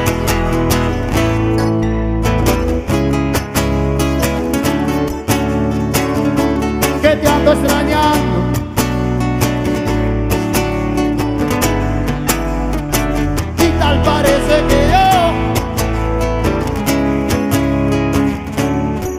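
Live bachata band playing an instrumental passage: guitar leading over keyboard with a steady beat.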